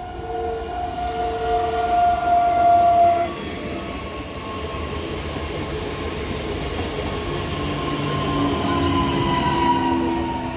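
Newag Impuls 2 (31WEbb) electric multiple unit running into the station with rail rumble and an electric whine. Steady whining tones build and then cut off abruptly about three seconds in. After that a single whine falls slowly in pitch as the train slows.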